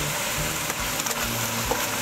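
Chicken pieces frying in a thick aluminium pot with a steady sizzle, while a wooden spoon stirs them, with a few faint clicks against the pot.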